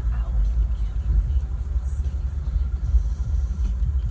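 Low rumble of a car in motion, heard from inside the cabin: road and engine noise with no other event standing out.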